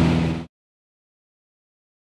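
Light aircraft engine and wind noise heard inside the cabin, with a steady low drone, cutting off abruptly about half a second in, followed by dead silence.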